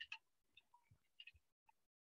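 Near silence with a few faint, scattered clicks of computer keyboard keys.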